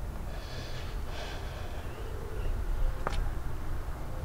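Steady low rumble inside a car cabin, with one short click about three seconds in.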